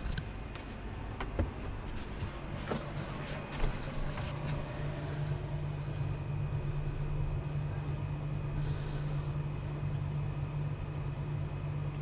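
A steady low hum, with a few light knocks and clicks in the first four seconds.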